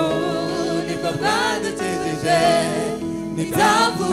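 Gospel worship team singing through microphones: a male lead voice with a group of backing singers joining in.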